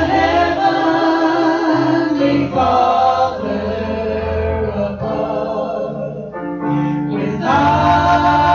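Church praise team of men's and women's voices singing a worship song into microphones, with long held notes; the sound thins out briefly before swelling again near the end.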